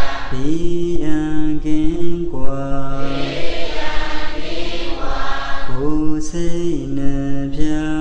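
A Buddhist monk chanting in a deep voice: long held notes that step up and down between a few pitches, in two phrases with a break near the middle.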